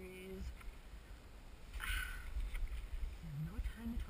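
Choppy water sloshing around a kayak hull under a steady low rumble of wind on the microphone, with a short burst of noise about halfway through.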